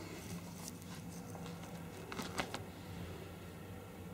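Faint clicks and light knocks from the video camera being handled and set down, over a low steady hum.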